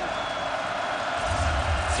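Stadium crowd noise picked up by the broadcast's field microphones: a steady, even murmur of a large crowd, with a low rumble joining in just over a second in.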